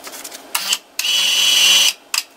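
Electric lifting motor of a drop-test tower running in two goes: a brief burst about half a second in, then a steady whine for about a second that cuts off near the end. The motor is hoisting a 100 kg test weight.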